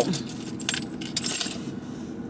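Small metal objects jingling and clinking in a quick run of light clicks, over a low steady hum inside a car.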